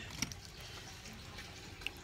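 Quiet room tone with a faint low hum, broken by two small clicks, one just after the start and one near the end.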